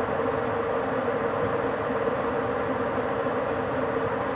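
Electric train running steadily at about 65 km/h, heard from inside the driver's cab: a continuous running noise of wheels on track with a steady hum.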